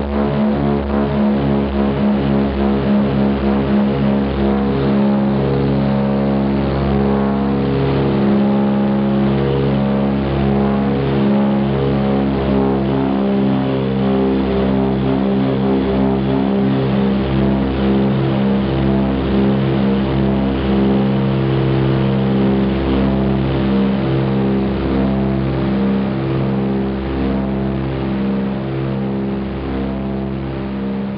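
Twin radial piston engines and propellers of a DC-3 Dakota heard from inside the cabin, running as a steady drone with a throbbing beat in the first few seconds. The sound eases slightly near the end.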